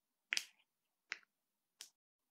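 Three short, sharp clicks about two-thirds of a second apart, the first a louder double click.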